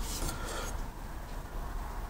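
Faint rubbing and scraping of hands working a flat steel strip around a pipe, bending it to shape.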